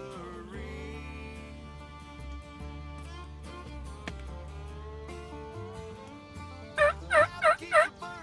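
Country music with guitar plays, then near the end a wild turkey calls loudly in four quick notes.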